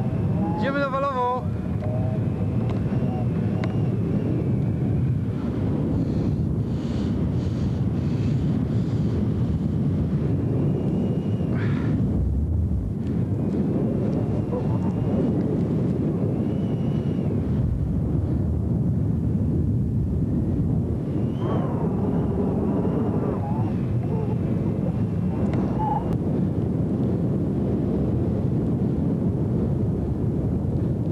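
Steady, rough wind noise buffeting an outdoor camcorder microphone, with faint distant voices calling briefly near the start and again about three-quarters of the way through.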